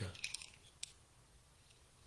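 Quiet room tone with a few faint short clicks in the first second, just as a man's voice trails off.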